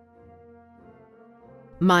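Quiet background music of slow, held notes with a horn-like tone. Near the end a voice begins announcing a name, much louder than the music.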